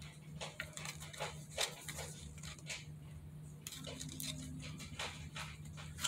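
Tarot cards being handled: faint, irregular light clicks and taps, over a steady low hum.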